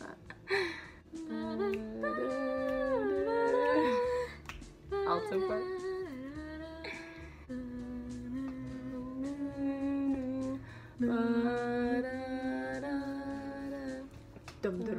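A woman's voice humming a tune without words, in long held notes that slide from one pitch to the next, with a few short breaks.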